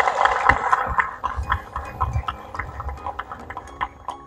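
Applause from a small group of people clapping, thinning out into a few scattered claps near the end.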